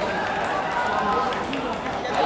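Men's voices calling and talking on an outdoor football pitch during play.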